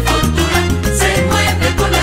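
Instrumental passage of a Venezuelan Latin band song: a bass line moving through held notes under steady, rhythmic percussion and band backing, with no singing.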